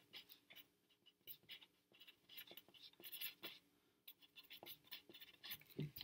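Pencil writing on lined paper: faint, intermittent scratching in short strokes as letters and symbols are written, with a soft knock near the end.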